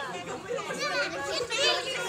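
Several young children's voices chattering and calling out at once, high-pitched and overlapping.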